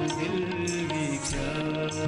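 Sufi devotional music: a male singer holding a gliding, ornamented vocal line without clear words, over harmonium and tabla accompaniment.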